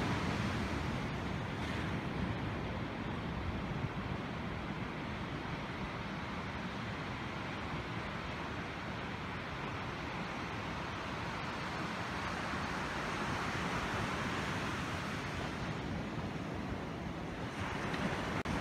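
Ocean surf washing onto a sandy beach: a steady rush of noise that swells a little about two thirds of the way in.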